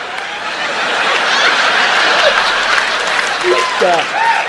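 Stand-up comedy audience laughing and applauding, a dense, steady wash of clapping and laughter that swells slightly. Near the end a man's laugh rises over it.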